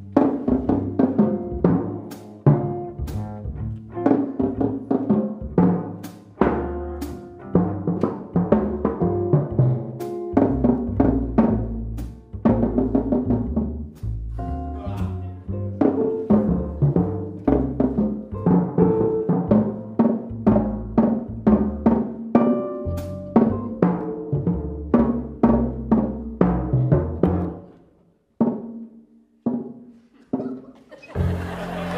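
Jazz drum kit played with soft felt mallets, the tuned toms and bass drum carrying a melody in pitched notes between sharp high clicks. The playing thins out to a few last soft strokes near the end.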